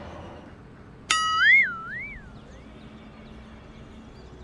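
Cartoon-style "boing" sound effect: a sudden twangy tone about a second in that wobbles up and down twice and fades out over about a second and a half.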